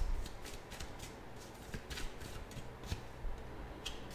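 A tarot deck shuffled by hand: soft, scattered clicks and slides of card against card, fairly quiet.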